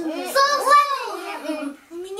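Young children's voices in a sing-song, chant-like delivery.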